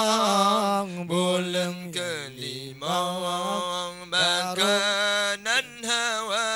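A man chanting an Acehnese meudike devotional song into a microphone, drawing out long ornamented notes that waver up and down, with short breaks for breath. Around the middle the melody dips lower and quieter before rising again.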